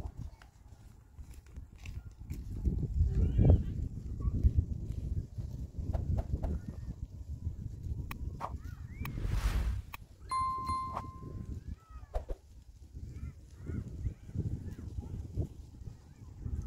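Wind buffeting the microphone in gusts, with scattered distant animal calls. About nine seconds in a short whoosh sounds, followed by a bright electronic ding lasting about a second: a subscribe-button sound effect.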